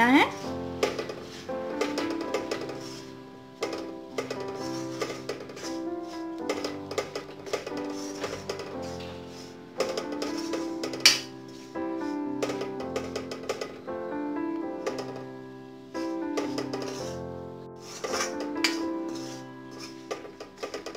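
Instrumental background music, with the clicking and scraping of a steel spatula stirring semolina in an iron kadhai while it roasts.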